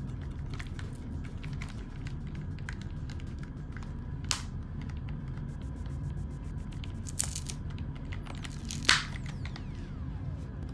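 Knife blade prying at the plastic ear-pad ring of a Beats Studio Wireless headphone ear cup: a few sharp clicks and snaps of the plastic, the loudest just before the end, over a steady low hum.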